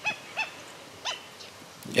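Black-necked stilt (tero real) calling: three short, separate notes, each briefly rising and falling in pitch, in the first second or so.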